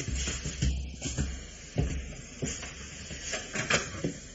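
Radio-drama sound effects of someone crossing to a door and opening it: a string of irregular footsteps, knocks and clicks of a lock and door. It is heard on an old mono broadcast recording with a narrow, hissy sound.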